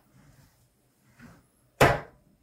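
A single sharp clunk near the end from an adjustment lever under the seat of a Hinomi H1 office chair as it is let go; before it, only a few faint handling sounds.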